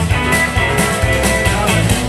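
Live blues band playing an instrumental stretch: electric guitars over drums at a steady beat, with no singing.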